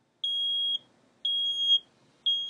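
Ordinary smoke/fire alarm sounding: two high-pitched beeps, each about half a second long with half-second gaps. They are the start of its three-beep fire-alarm pattern, whose beep and gap lengths the detector board uses to recognise a fire alarm.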